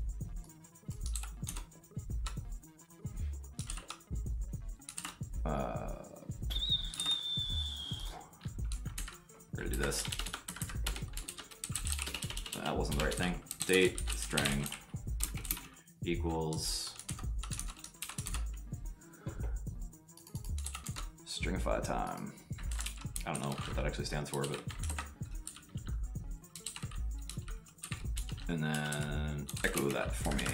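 Typing on a computer keyboard, a run of quick key clicks with short pauses, over background music.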